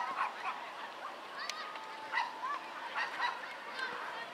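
Young footballers' voices calling out across the pitch: short, high-pitched shouts and calls, scattered throughout, with a few sharp knocks in between.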